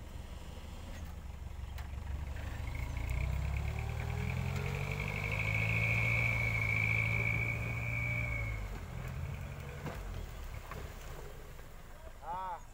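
Dump truck engine speeding up to drive the tipper hydraulics as the loaded bed is raised, with a steady high whine over the engine for about six seconds. Both then drop back as the load begins to slide out.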